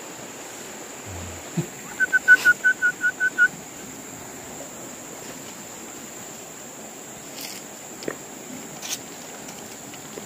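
A bird calls a quick run of about eight short, even notes on one pitch, roughly five a second, about two seconds in. Under it, a steady high insect drone and the constant rush of the river, with a few faint clicks later on.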